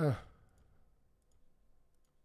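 A man says a short, falling 'hein', then a few faint, sparse clicks of a computer mouse.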